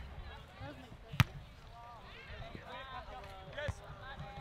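A soccer ball kicked hard about a second in, a single sharp thud that is the loudest sound, with a lighter kick near the end. Players' voices call out across the field throughout.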